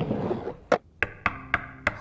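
A soft breathy rustle, then five light, unevenly spaced knocks on wood within about a second: someone knocking to get attention.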